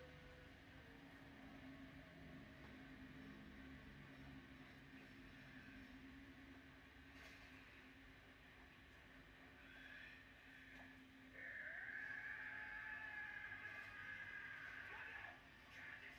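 Near silence. A faint, steady sound comes in about two-thirds of the way through and fades out near the end.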